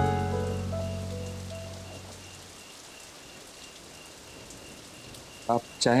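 Steady rain falling, under sustained background music notes that fade out over the first two seconds; a man's voice begins near the end.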